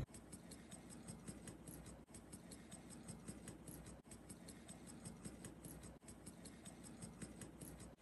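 Near silence: faint room tone with a fast, even ticking.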